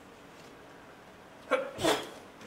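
Quiet room pause, then about one and a half seconds in, a short, sharp two-part burst of sound from a person.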